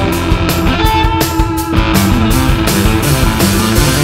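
Rock band playing live: electric guitar and keyboard over a steady beat, with a held high note for about a second in the middle.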